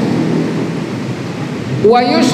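Steady rushing background noise in a pause between a man's phrases, fairly loud and fading slightly.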